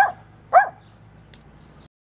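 Small dog barking twice, two short high yaps about half a second apart.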